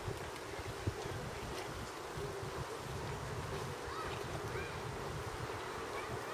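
Steady wind noise buffeting the microphone outdoors, with a low rumble. A few faint, brief sliding whistle-like tones come through about four to five seconds in.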